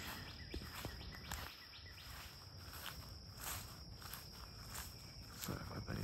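Faint footsteps of a person walking along a dirt and grass path, with a steady high insect drone in the background.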